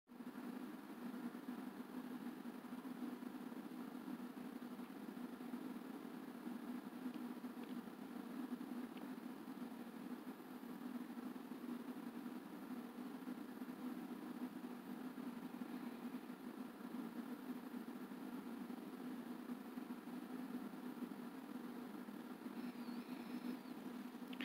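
A faint, steady low hum with an even hiss over it, unchanging throughout, like the drone of a fan or appliance in a room.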